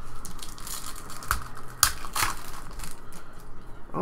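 Trading cards and foil pack wrappers being handled on a table: crinkling and rustling, with a few sharp clicks around the middle.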